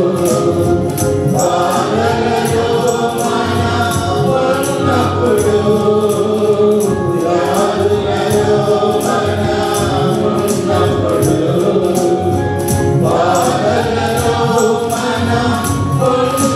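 Mixed choir of women's and men's voices singing a Telugu Christian worship song, with a steady percussion beat underneath.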